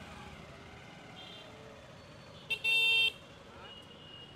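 A vehicle horn honks about two and a half seconds in: a quick tap and then a half-second toot, over faint street traffic noise.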